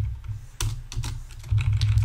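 Computer keyboard keys pressed in a handful of short, irregularly spaced clicks as a line of code is edited, over a steady low hum.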